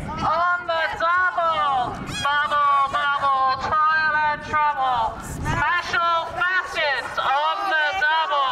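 A voice amplified through a handheld megaphone, talking almost without pause, with short breaks between phrases.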